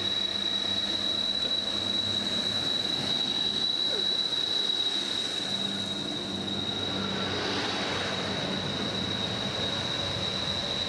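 Class 150 Sprinter diesel multiple unit pulling out of the station, its diesel engines running as it rolls past and draws away, with a steady high-pitched whine over it.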